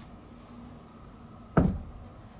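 A single thump about one and a half seconds in, dying away quickly, over a faint steady hum.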